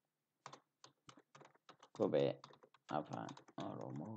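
Typing on a computer keyboard: a quick run of keystrokes starting about half a second in. A voice speaks over the keystrokes in the second half.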